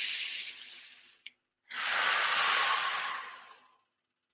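A man's deep breath in and then a long breath out, close to a headset microphone, with a small click between them.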